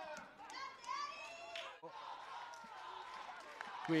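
Distant, high women's voices calling and shouting on the football pitch over light open-air stadium ambience, picked up by the field microphones.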